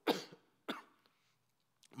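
A man coughs twice into his hand: one cough right at the start and a shorter one just under a second in.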